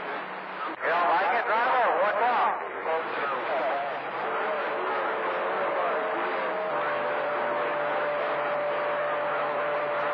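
CB radio receiver on channel 28 picking up distant skip: a constant static hiss with a garbled, warbling voice from about a second in to about two and a half seconds. From about four seconds on, steady whistling tones sit under the noise.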